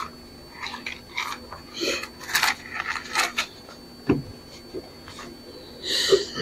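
Thin Bible pages being turned: a run of short papery rustles and crackles, with a soft knock about four seconds in.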